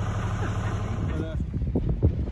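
A sailing yacht's inboard engine running with a steady low drone. A little past halfway, wind gusting on the microphone takes over.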